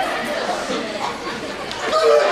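Indistinct chatter of several voices talking over one another in a hall, with no single clear speaker.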